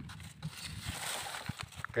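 A plastic bottle being handled, the liquid inside sloshing, with a brief rushing hiss about a second in and a few light clicks.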